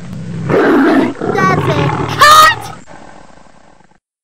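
An angry growling roar, rough at first, breaking into wavering cries and peaking in a loud, shrill wavering cry past the two-second mark before trailing off.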